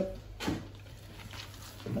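One short, soft knock about half a second in, followed by quiet room tone with a low steady hum.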